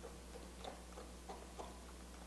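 A utensil stirring thick pastry cream in a glass bowl, making faint, irregular clicks and taps against the glass, about two or three a second.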